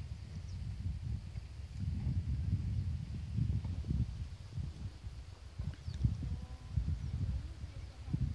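Wind buffeting the microphone: an uneven low rumble that comes in gusts, stronger from about two seconds in.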